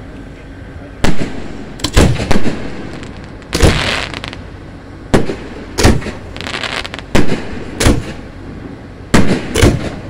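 Aerial fireworks display: shells bursting in a quick, irregular series of sharp bangs, about a dozen in all, some coming in close pairs. Between the bangs come a couple of longer hissing, crackling bursts.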